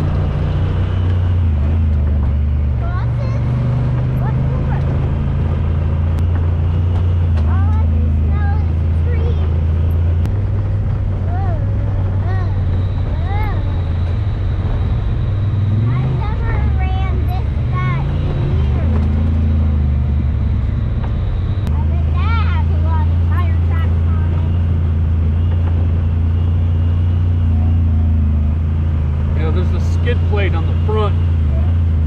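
Honda Talon side-by-side's parallel-twin engine running at low, steady revs while driving a dirt trail, its pitch dipping and picking up again a few times with the throttle.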